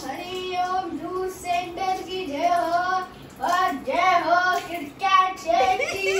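A child singing a tune in held notes, with short breaks between phrases.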